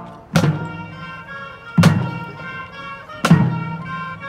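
Marching band playing sustained wind and brass chords, punctuated by three loud percussion accents evenly spaced about a second and a half apart. Each accent rings on, and the melody lines move after it.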